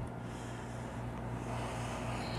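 Room tone: a steady low hum with a faint even hiss, no distinct events.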